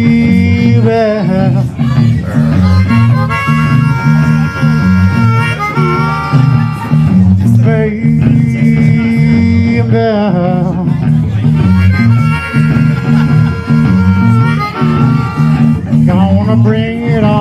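Blues harmonica played through a vocal microphone, with long held and bent notes, over a repeating bass and electric guitar riff from a live band.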